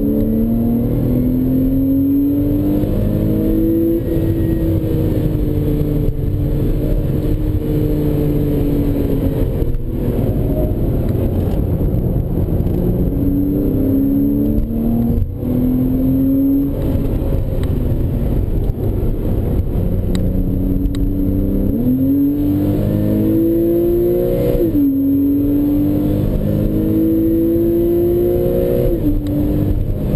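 Porsche 911 Carrera S flat-six engine heard from inside the cabin, pulling hard on a track lap. Its note climbs under acceleration and drops sharply at gear changes several times, with stretches where it eases off the throttle for corners.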